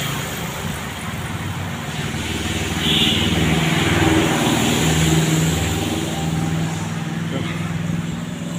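Street traffic with a heavy vehicle's engine running close by, its low hum getting louder about three seconds in.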